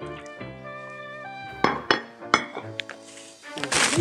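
Background music with sustained instrumental tones, over which a serving utensil clinks three times against dishware about halfway through as soup is ladled into a bowl, followed by a short burst of noise near the end.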